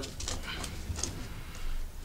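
Light handling of a 3D-printed plastic gear mechanism: a few faint clicks and rubs of plastic under the hands, over a low steady room hum.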